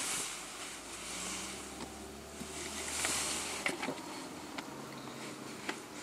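A car going past outside, heard from inside a parked car. A low engine rumble and tyre hiss swell to a peak about halfway through and then fade away, with a few faint clicks near the end.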